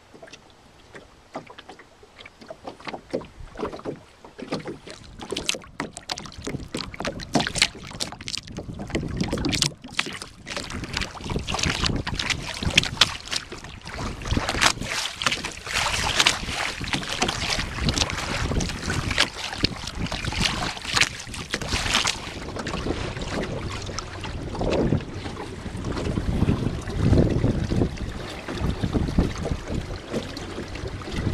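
Water splashing and hissing along the hull of a Swampscott dory under sail, the bow wave building after the first few seconds. Near the end, gusts of wind rumble on the microphone.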